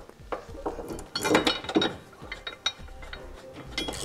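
Light metallic clinks and clicks as a steel bolt, washers and a steel bracket are handled and threaded by hand into a pickup truck's body mount.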